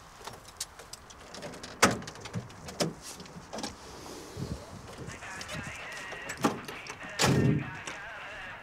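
Scattered light clicks and knocks of handling inside a vehicle cab, about a dozen, the sharpest near two, three and six and a half seconds in. A short spoken word comes about seven seconds in.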